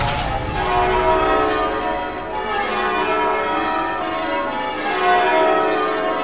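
Church bells pealing, many ringing tones overlapping and sustaining, with a sharp knock right at the start.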